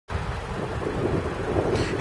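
Wind buffeting the camera microphone outdoors: an irregular, rumbling noise with no steady pitch.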